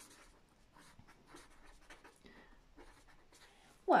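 Marker pen writing on paper: a string of short, faint scratchy strokes as words are written out.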